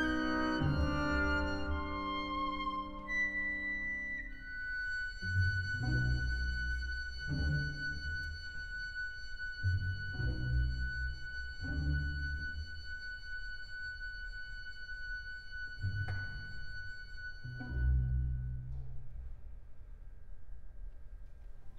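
Orchestra playing quietly: a piccolo steps down through a few notes, then holds one long high note while cellos and double basses play short low notes about every two seconds beneath it. The piccolo's note fades out near the end.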